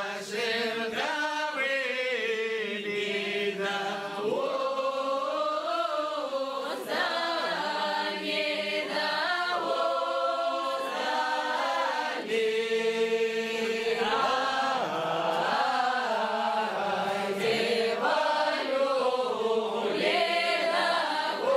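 A group of men and women singing an upper-Don Cossack round-dance song unaccompanied, the voices carrying on without a break.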